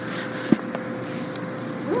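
Steady hum and rumble of laundromat machines running, with a sharp click about half a second in.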